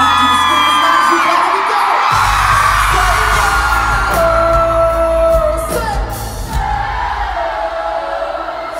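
Arena concert crowd screaming and cheering, many high voices at once, over live pop music; the band's bass comes in about two seconds in and a voice sings long held notes over the crowd.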